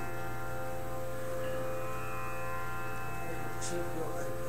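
Steady musical drone: several held tones sounding together, unchanging in pitch and level.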